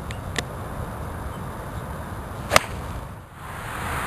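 A golf wedge striking a ball off the turf: one sharp click about two and a half seconds in, over steady outdoor background noise.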